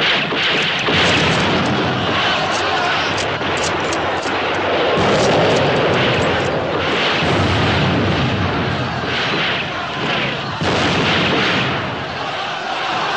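Film battle soundtrack: heavy, continuous rifle fire with many sharp shots and explosions mixed in.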